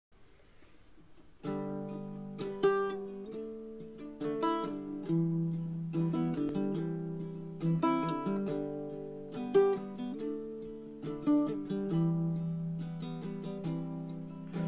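Ukulele playing an instrumental intro: chords and picked melody notes that come in sharply about a second and a half in.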